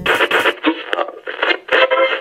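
Tinny, radio-like sound, cut off below and above like audio through a small speaker, coming and going in quick choppy pulses.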